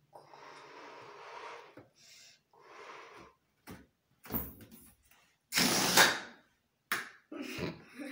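A rubber balloon being blown up with long breaths, then its air let out through the pinched neck in short spurts and one loud, longer rush about three-quarters of the way in.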